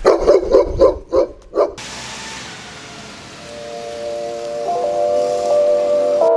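A dog barks about six times in quick succession during the first two seconds, the loudest sound here. Then music fades in with long held notes, growing louder toward the end.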